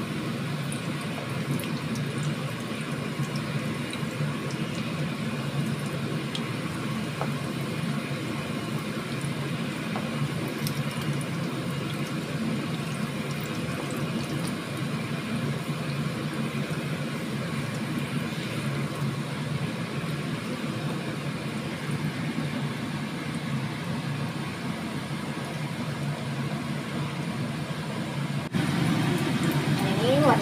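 Egg-coated potato fritters (perkedel) sizzling steadily in hot oil in a frying pan, with a few light clicks of a wooden spatula turning them, over a steady low hum.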